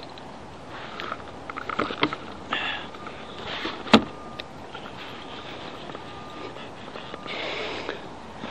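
Handling noise on a plastic fishing kayak while a hooked bass is brought in: rattles and knocks of rod and landing-net gear against the hull, with one sharp knock about four seconds in.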